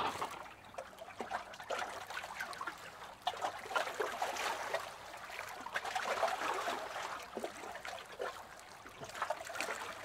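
Faint, irregular bubbling and trickling of pool water.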